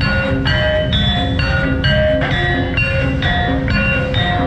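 Javanese gamelan music: metal-keyed percussion striking a steady run of ringing notes, a few per second, over a low drum.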